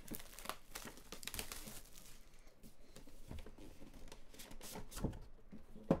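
Clear plastic shrink-wrap being torn and crinkled off a metal trading-card box tin, in irregular crackles.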